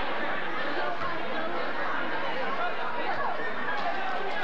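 Basketball crowd in a gymnasium chattering: a steady babble of many overlapping voices.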